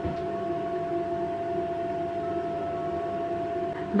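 Steady background hum with a few faint held tones and no distinct events.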